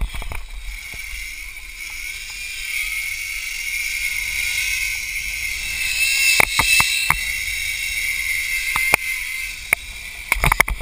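Zipline trolley pulleys running along a steel cable: a steady high whine, climbing a little in pitch as the ride picks up speed, over a rushing noise. A few sharp clicks come about six to seven seconds in and again near nine seconds.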